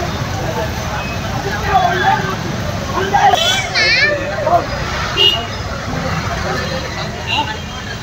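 Street traffic with vehicle engines running in a steady low rumble, under the voices of a crowd of people talking and calling out; a short warbling high sound comes about halfway through.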